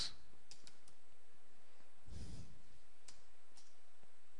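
Computer keyboard keystrokes: three quick key clicks about half a second in, then single clicks a little after three seconds and again about half a second later, as the end of a typed command is entered. A soft rush of noise about two seconds in.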